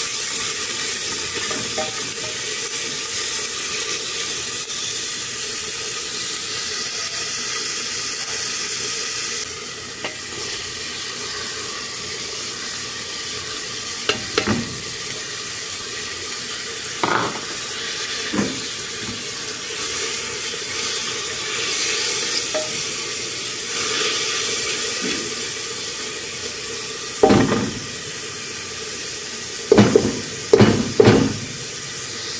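Diced onion and green pepper sizzling steadily in hot oil in an aluminium pressure-cooker pot while being stirred with a spoon. A few short knocks of spoon and bowl against the pot break in, the loudest near the end.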